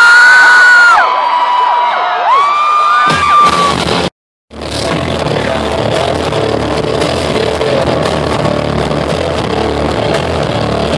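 Large festival crowd screaming and cheering, then the sound cuts out for a moment and a rock band comes in playing loud live, with electric guitars and bass over the PA.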